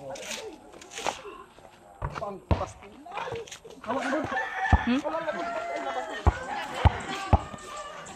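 A rubber ball thudding about seven times at uneven intervals as it bounces on a hard dirt court and strikes a wooden backboard, with voices and a rooster in the background.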